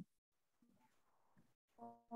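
Near silence: call room tone, with a short faint voice just before the end.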